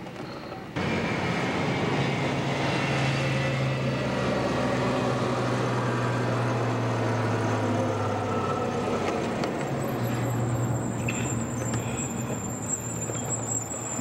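Car engine and road noise heard inside the moving car's cabin: a steady low hum under a wash of road noise. It starts abruptly about a second in.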